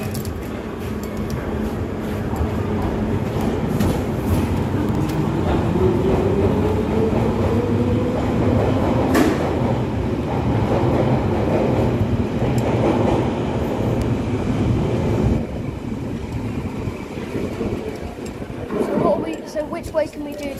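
London Underground Piccadilly line train (1973 Stock) pulling out of the platform: the traction motors whine, rising in pitch as it accelerates, over the running noise of wheels on rail. The train noise ends abruptly about three quarters of the way through.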